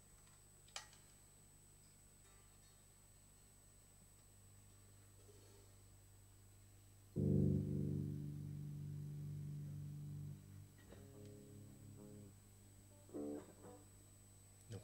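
Electric guitar through the stage amp, played briefly to check a freshly swapped instrument. A click comes about a second in, then one loud chord rings out for about three seconds around halfway through, followed by a few short, quieter notes near the end, over a low amplifier hum.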